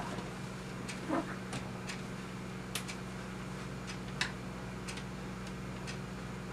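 Steady low electrical hum of a quiet room, with a few scattered light clicks and taps and a brief short murmur about a second in, from someone handling clothes and small objects at a desk.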